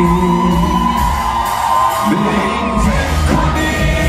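Live pop band playing loudly, with drums, electric guitars and a heavy bass end, heard from the audience, with whoops and yells from the crowd around the middle.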